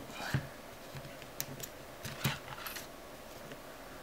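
A handful of light, irregular clicks and taps as a thin metal tool tip presses along a metal LED backlight strip, seating it flat on the reflector; the most prominent clicks come about a quarter second in and just past two seconds.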